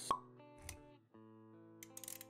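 Intro music for an animated logo sequence: a sharp pop sound effect right at the start, then soft, held synth-like chords.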